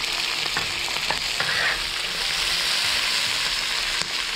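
Fried pork intestines, dried chillies and vegetables sizzling in hot oil in a large wok while being stir-fried, with a metal spatula clicking and scraping against the pan a few times in the first half.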